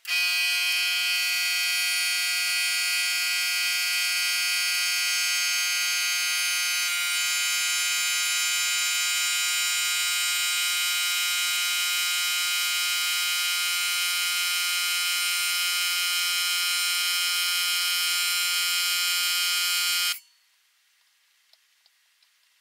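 A loud, steady electronic buzzing tone with many overtones that starts abruptly and cuts off suddenly about twenty seconds later.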